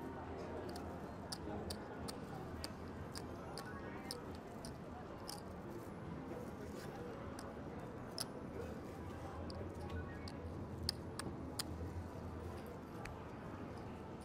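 Casino chips clicking against each other as they are picked up and stacked from the betting spots, with scattered light clacks of cards being gathered on the felt table.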